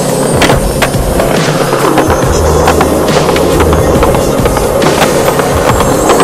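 A skateboard rolling on concrete: steady wheel noise with many sharp clicks, mixed with a music track.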